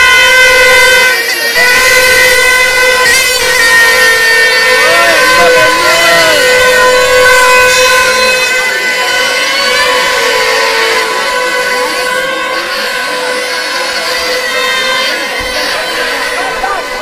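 Plastic toy horns blown by a street crowd: a steady, loud, reedy horn tone held on for several seconds, with shouting voices over it. The horn weakens in the second half.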